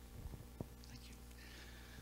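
Handheld microphone being handled as it is passed from one person to another: a few soft bumps and a click in the first second, then a faint breathy hiss close to the microphone. A steady low electrical buzz from the amplified audio runs underneath.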